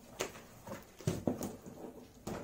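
Cardboard packaging being handled while a box is unpacked: a string of about five short knocks and scrapes of cardboard against the table.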